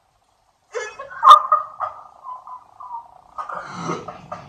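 Men laughing hard in high-pitched, broken bursts, starting suddenly about two-thirds of a second in, with a sharp crack about a second in.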